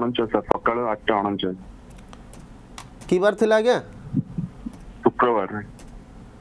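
People talking in short spells with pauses between them, with a few faint clicks in the gaps.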